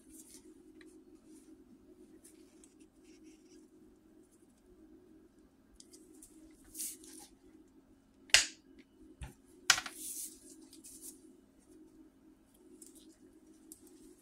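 Bolt cutters closing on a small pure-gold button: a sharp snap about eight seconds in, then a second sharp click a little over a second later, over a low steady hum.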